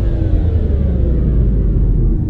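Cinematic logo-reveal sound effect: a loud, deep rumble with several tones gliding slowly downward through it.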